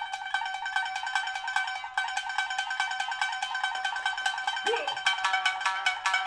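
Tsugaru shamisen struck hard with a bachi plectrum, played in a rapid stream of sharp plucked notes, about eight a second, returning again and again to one high note. The playing grows louder and fuller near the end, with a lower note sounding beneath it.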